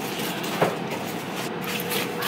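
Packaging being handled: a cardboard box and its moulded packing insert scraping and rustling as the insert is pulled out, with a short knock about half a second in.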